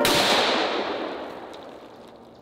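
A single pistol shot, sharp at the start, followed by a long echo that dies away over about a second and a half.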